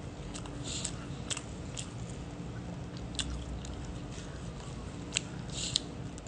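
Knife and fork clicking and scraping on a plate while cutting pancakes, with close-up chewing; sharp little clicks come every second or so, with two brief scrapes, over a steady low hum.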